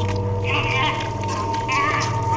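Two short, wavering vocal cries, about half a second in and again near the end, over a steady sustained drone.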